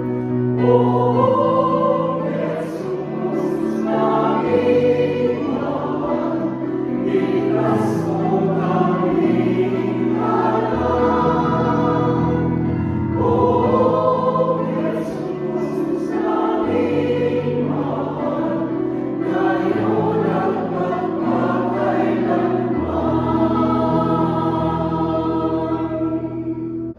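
Mixed church choir of women and men singing a hymn, with sustained notes that change every second or two.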